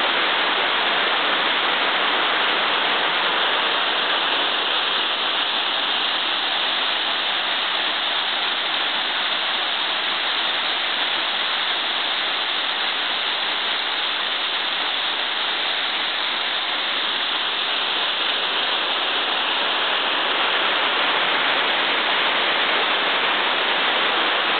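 Steady rushing of water from a creek and waterfall, an even rush with no breaks.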